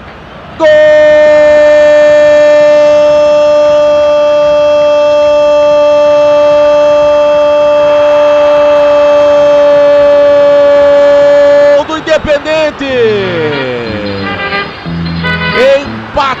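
A Brazilian radio football narrator's long shouted 'gol', held on one unbroken, steady note for about eleven seconds to announce a goal. It cuts off into a short station jingle of gliding and stepped notes.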